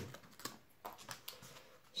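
Faint light clicks and taps of corrugated cardboard pieces being handled and set against each other on a cutting mat, a few scattered ticks.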